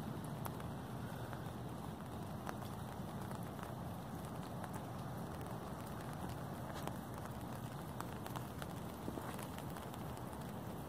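Steady light rain, with scattered ticks of drops hitting an umbrella overhead and footsteps on wet pavement.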